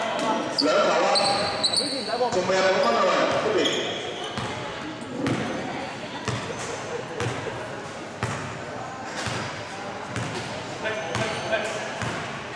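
A basketball being dribbled on a hardwood gym floor, its irregular bounces echoing around a large sports hall, with people's voices calling out during the first few seconds.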